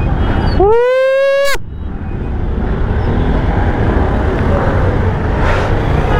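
Motorcycles idling and creeping forward in a queue, a steady low engine and traffic rumble. About half a second in, one loud pitched tone slides up and then holds for about a second before cutting off.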